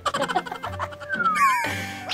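Comedic sound-effect music added in the edit: quick short notes, a falling whistle-like slide about a second in, then a wavering tone near the end.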